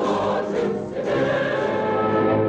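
A choir singing with music, holding long sustained notes.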